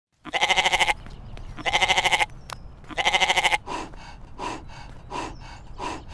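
Goat bleating: three loud, quavering bleats a little over a second apart, followed by a run of shorter, quieter bleats.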